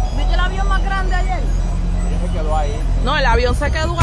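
People talking, their words indistinct, over a steady low hum.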